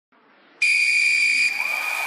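Basketball referee's whistle blown in one long, steady, high-pitched blast starting about half a second in, signalling the jump ball. It fades into crowd noise from the arena.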